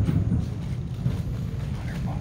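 Steady low rumble of a busy indoor hall's background noise, with a short spoken "yeah" at the start.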